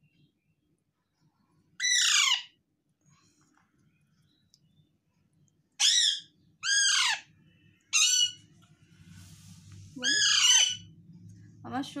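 Young Alexandrine parakeet squawking: five short, loud calls, each falling in pitch. The first comes about two seconds in and the last near the end, with a pause of several seconds after the first.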